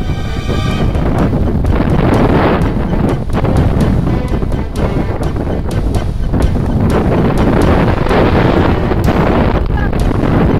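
Wind buffeting the microphone, with music playing over it.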